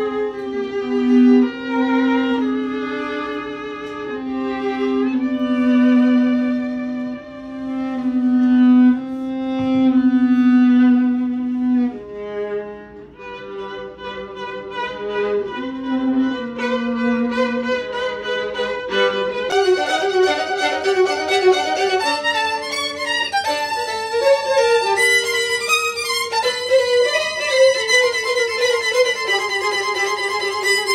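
Two violins playing a duet at sight, the lower part holding long notes under a moving upper line. About two-thirds in the sound changes abruptly to a brighter, busier passage of quicker notes, ending on a falling slide.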